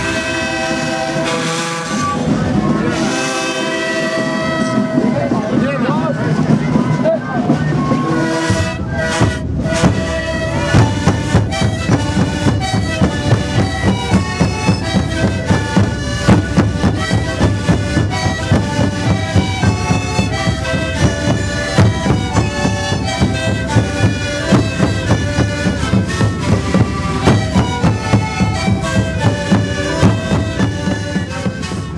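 An Andean sikuri ensemble playing: many siku panpipes (zampoñas) sounding a melody in held, breathy notes together with large bass drums. From about ten seconds in the drums keep a steady, even beat.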